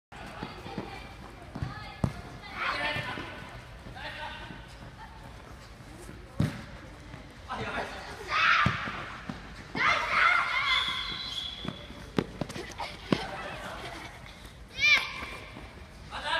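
Children calling and shouting during a futsal game, with several sharp thuds of the ball being kicked on artificial turf; a short high-pitched shout near the end is the loudest moment.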